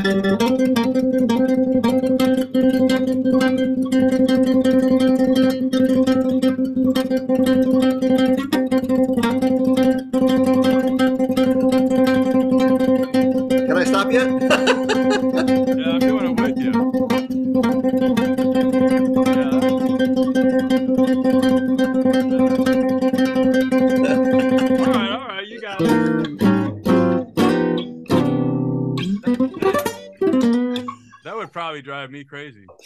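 Nylon-string classical guitar with one note plucked over and over in a fast, unbroken stream for about twenty-five seconds. Near the end it breaks into a few separate notes with short gaps between them.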